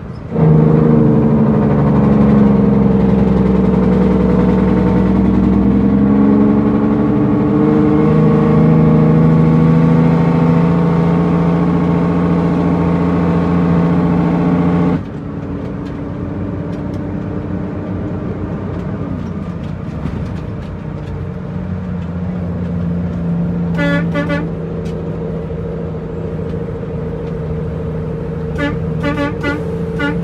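International 9900ix truck's diesel engine heard from inside the cab: a loud drone that starts suddenly and cuts off abruptly about halfway through, leaving a quieter steady engine drone. Near the end come a few short horn toots.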